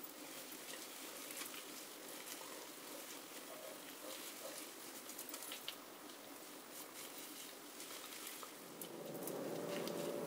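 Faint wet squishing and small clicks from gloved hands working hair dye through wet hair and piling it up. A faint steady hum comes in near the end.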